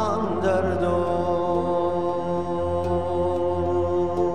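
Music: a long sustained sung note, wavering briefly as it settles, held over a steady low drone.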